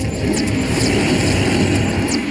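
A loud, steady, noisy rumble with a couple of short high whistles falling in pitch: a dramatic sound effect on the serial's soundtrack.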